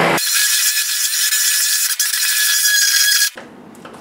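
Handheld immersion blender running in a crock pot of thick pumpkin butter, a steady high motor whine that switches off suddenly a little over three seconds in.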